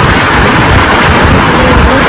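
Heavy rain, a loud steady hiss with a low rumble, with a faint wavering melody underneath.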